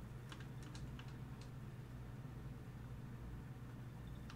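Quiet room tone with a steady low hum, and a few faint, scattered clicks in the first second and a half.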